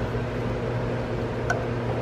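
Steady low machine hum with one faint click about one and a half seconds in; the hammer taps that loosened the wheel nut have stopped.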